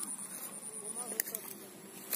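A steady, high-pitched insect trill that stops about halfway through, over faint distant voices and a few light clicks.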